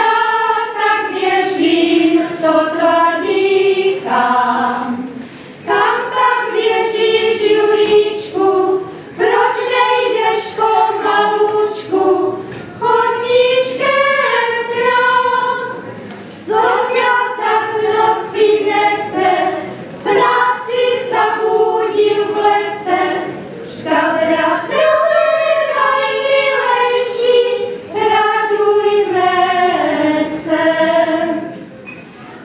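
Women's folk choir singing a Christmas carol unaccompanied, in phrases of a few seconds with short breaks for breath between them.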